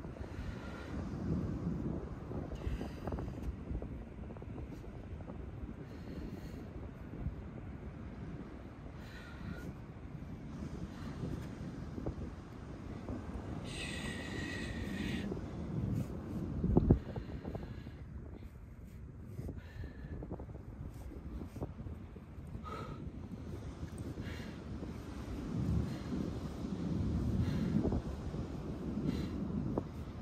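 Wind buffeting the microphone, a low rumble that swells and fades in gusts. A brief hissy burst comes about fourteen seconds in, and a sharp thump, the loudest sound, about three seconds later.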